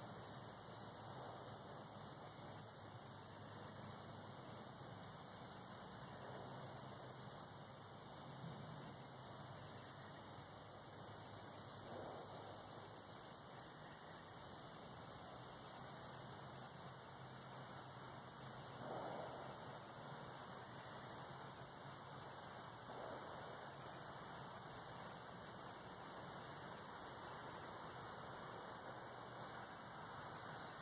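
Insects in late summer trilling steadily in a high, continuous buzz, with a second, slightly lower chirp repeating about once a second.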